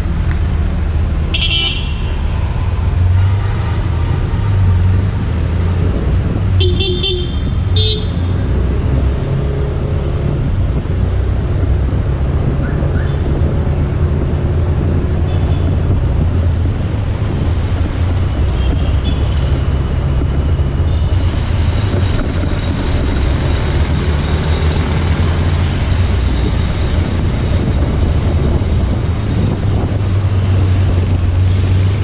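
City street traffic with a heavy steady low rumble, and a few short vehicle horn toots about a second and a half in and again around seven to eight seconds in.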